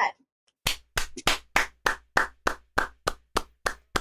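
Hands clapping a steady beat, about a dozen sharp claps at three to four a second, beginning about half a second in and counting in an improvised song.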